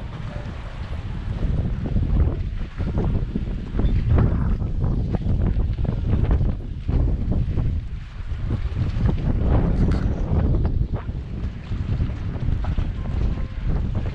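Wind buffeting the camera microphone: a low, uneven noise that swells and drops in gusts.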